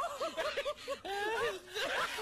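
Laughter: a quick run of short, high-pitched laugh pulses, then a longer wavering laugh note about a second in.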